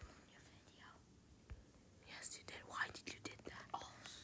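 A faint whispering voice in the second half, mixed with a few light clicks.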